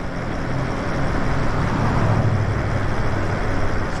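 Wind rushing over the microphone and tyre noise on asphalt from a Lyric Graffiti e-bike riding along. It is a steady rushing noise that swells a little in the low end around the middle.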